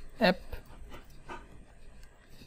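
Faint computer keyboard typing: a scatter of soft, irregular key clicks.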